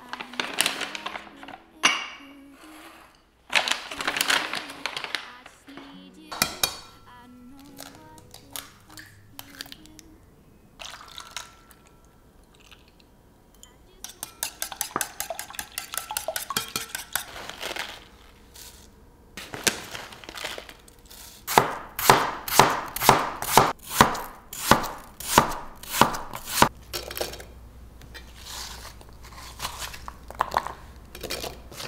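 Roasted sunflower seeds pour from a paper bag into a ceramic jar with a dry rattle. Later a small wire whisk clicks rapidly against an enamel bowl, then a knife dices an apple on a wooden cutting board at about two chops a second, the loudest sounds. Soft background music underneath.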